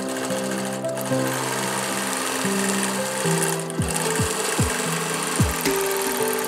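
Background music of held, sustained notes, with a beat of deep thuds coming in about halfway. Under it runs the stitching of a BERNINA Q24 longarm quilting machine, sewing free-motion quilting.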